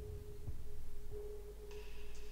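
Soft background music: one sustained, ringing tone that swells and fades over a low bass.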